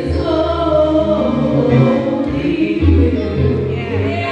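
A young woman singing a gospel song into a handheld microphone, over instrumental accompaniment with deep sustained bass notes.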